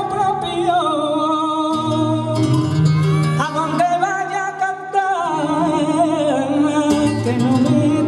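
Male flamenco singer singing a fandango to flamenco guitar accompaniment, drawing out long ornamented notes that waver up and down.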